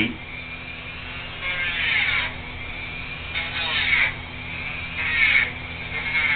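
A Dremel rotary tool with a Petacure nail-grinding head running with a steady high whine. Its sound rises and shifts in pitch in four short passes as it is pressed against a dog's toenail to grind it down.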